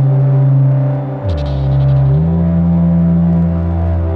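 Electronic synthesizer music, dominated by a loud, sustained bass drone that slides down in pitch about a second in and jumps back up a second later. Softer held tones sit above it, with a brief patter of high ticks as the slide begins.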